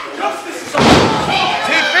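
Two wrestlers crashing down onto the wrestling ring's mat from a superplex off the top corner: one loud slam about three-quarters of a second in.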